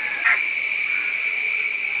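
Loud, steady, shrill insect drone: one continuous high-pitched buzz with overtones, held without a break.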